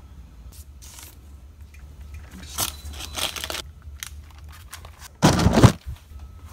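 A giant slab of pressed candy-heart dough being handled and flipped over on a wooden board: soft scraping and rustling, then one loud thump about five seconds in.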